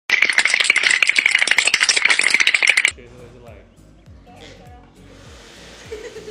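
A loud inserted meme sound effect: a dense run of rapid clicking noise lasting about three seconds and cutting off abruptly. After it, quieter background music with a repeating bass pattern continues.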